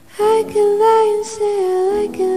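A high female voice singing long, gently wavering notes in a pop song, coming in suddenly just after the start over soft backing.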